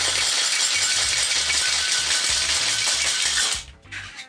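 Ice rattling hard inside a stainless steel tin-on-tin cocktail shaker being shaken to chill it. The rattle is dense and steady and stops shortly before the end.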